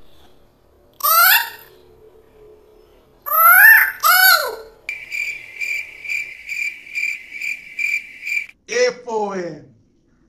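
Cricket-chirp sound effect: a steady high chirp repeating about three times a second for a few seconds, starting and stopping abruptly. It is the stock 'crickets' gag marking an awkward silence.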